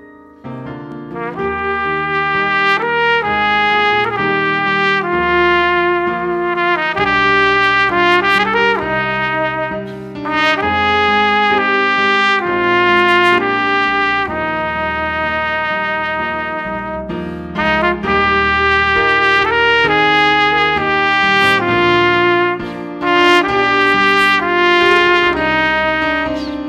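Trumpet playing a melody over a Yamaha Clavinova digital piano accompaniment, coming in just after the start.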